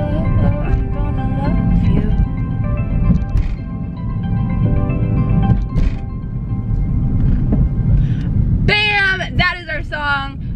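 Background music with a melody of stepped notes over the steady low rumble of a car cabin on the move; a woman's voice comes in near the end.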